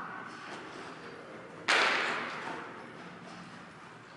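A single sudden thud or knock a little under two seconds in, its echo dying away over about a second in a large, hard-walled hall.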